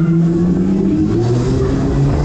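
Fairground ride heard from a camera riding on it while it spins: loud ride music with a held bass note that shifts pitch about a second in, over a steady low rumble of rushing air and machinery.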